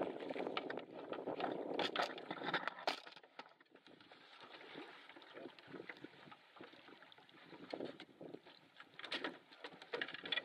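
A hooked fish thrashing and splashing at the water's surface beside a canoe, with wind noise on the microphone. About three seconds in this gives way suddenly to a quieter stretch of scattered small clicks and knocks as the fish and lure are handled.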